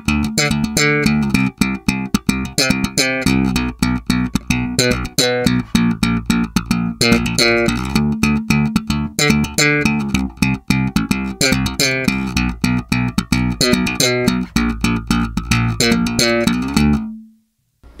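Warwick Rock Bass Corvette electric bass played in slap style: a fast run of sharply attacked thumped and popped notes. Both pickups are on, with volume, treble and bass all turned fully up. The playing ends on a held note about a second before the end.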